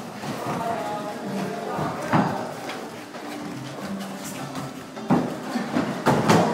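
Sparring partners grappling and going down onto gym mats: scuffling with sharp thuds of bodies landing, the loudest about two seconds in and again near the end, with voices around them.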